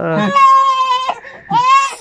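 An infant crying: two high wailing cries, the first held for nearly a second, the second shorter and rising in pitch.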